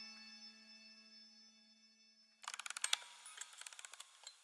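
The last notes of a music box's steel comb ringing away, then about two and a half seconds in a run of fast, faint ratchet-like clicks from the music box's mechanism that thins out toward the end.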